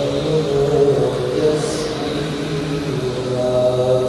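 Arabic devotional chanting by a single voice in long, slowly moving held notes, with a steady low hum underneath.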